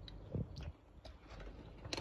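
Quiet room with faint handling noise: a few soft clicks, and a sharper tap near the end as a hand takes hold of a smartphone.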